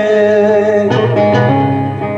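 Turkish folk music on a bağlama (saz), the long-necked lute, amplified through stage speakers: a held sung note ends about a second in and the bağlama plays on in quick plucked phrases.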